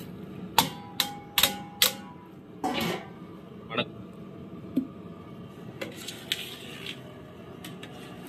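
A steel bowl knocked four times against the rim of a large aluminium cooking pot, each knock ringing briefly, followed by a scrape and a few softer metal clinks.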